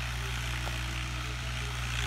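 Distant Ghazi diesel tractor engine running steadily under load, a constant low drone as it pulls an 11-tine cultivator through dry soil.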